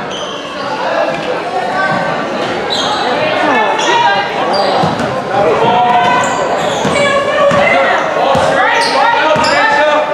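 A basketball being dribbled on an indoor gym court, under many voices of players and spectators talking and calling out in a large hall.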